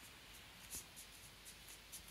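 Faint, irregular scratchy rustles of a towel scraping on a wooden floor as a cat squirms on it and tugs at it, several soft scrapes over quiet room tone.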